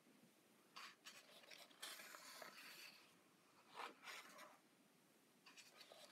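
Faint rustling and swishing of coloring book paper pages as they are handled and turned by hand, in a few short bursts: one about a second in, a longer one around two seconds, one near four seconds, and another near the end.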